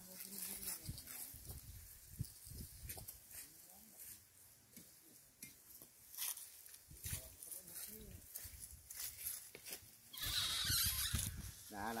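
Faint, low voices in the background with scattered light ticks, then about ten seconds in a burst of leafy rustling as a branch cut with a pole pruner comes down through the tree.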